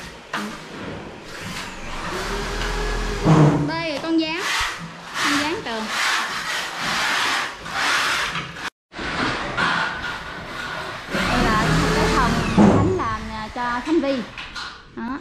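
A power drill or screw gun run in bursts, its motor spinning up and winding down twice, with knocks and voices among the building work.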